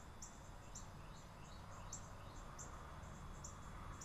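Faint insect chirping: short, high-pitched chirps repeating about two to three times a second, over a low steady hum.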